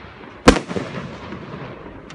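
One loud bang from a consumer fireworks cake (a multi-shot battery) about half a second in, dying away over the following second. It is one shot in a steady sequence.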